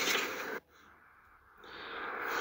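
Low background noise that drops out to dead silence for about a second, then slowly comes back: the gap at a cut between two clips.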